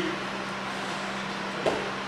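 Steady low hum and hiss of background noise, with one brief short sound a little past one and a half seconds in.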